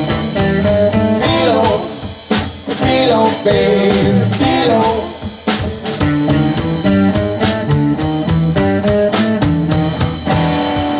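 Live blues band playing: electric and acoustic guitars, electric bass and a drum kit, with a steady drum beat and wavering guitar notes.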